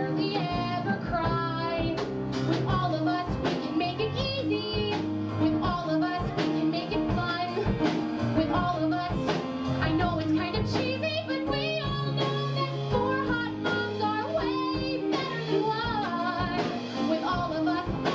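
Women singing a musical-theatre song backed by a live band with drums.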